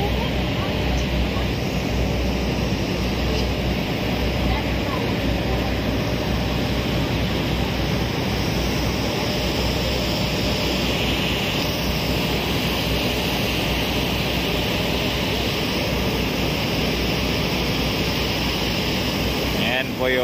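Steady noise on the open deck of a moving passenger ferry: the ship's low engine drone mixed with wind and water rushing past.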